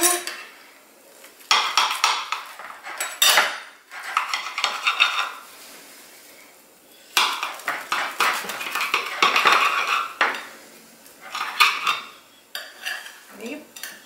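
A kitchen knife sawing through a fried matzo brei and scraping on the plate beneath it, in several scratchy bouts of one to three seconds with short pauses between.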